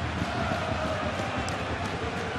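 Football stadium crowd noise, steady throughout, with faint held notes of fans singing or chanting in the stands.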